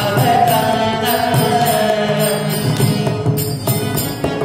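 Tamil devotional bhajan: a male singer's voice holds a wavering note over sustained harmonium chords, with mridangam strokes keeping the rhythm.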